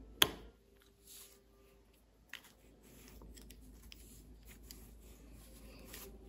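Plastic minifigure handled on a tabletop: one sharp click just after the start as a figure is set down, a smaller click a little over two seconds in, then faint handling sounds.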